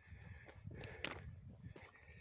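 Faint footsteps of a person walking, a few soft irregular steps over a low steady rumble.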